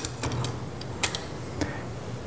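Several light clicks and taps spaced irregularly over two seconds, over a faint steady low hum.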